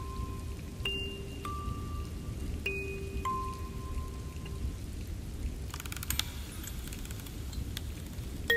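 Steady rain with slow, sparse music-box notes that ring on and then stop about halfway through, leaving only the rain and a short cluster of light clicks near the end.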